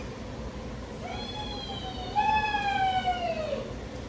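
A dog whining: one long, high whine starting about a second in and slowly falling in pitch over about two and a half seconds.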